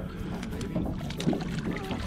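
Small waves lapping against the side of an aluminium jon boat, with a steady low rumble under it, while a landing net is dipped into the water for a hooked redfish.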